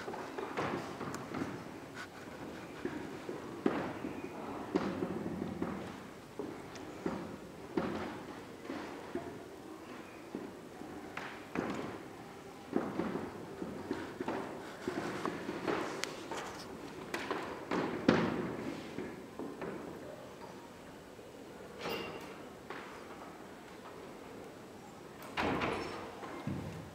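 Irregular knocks and thuds echoing in a large hall, scattered through the whole stretch over a low room background, with one louder knock about two thirds of the way through.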